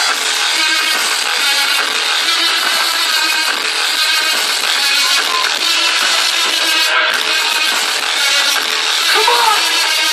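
Loud electronic dance music from a festival main-stage sound system, recorded close up on a phone so that it sounds harsh and thin, with no deep bass.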